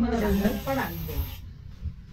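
A steady spray-like hiss lasting just over a second under people talking, cutting off suddenly about one and a half seconds in.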